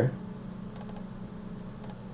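Faint computer mouse clicks, a quick cluster about a second in and another near the end, as a folder is double-clicked open, over a steady low hum.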